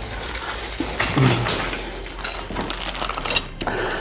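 Plastic wrapping crinkling and rustling in dense, crisp crackles as a fiberglass cowl is lifted and unwrapped from its bag.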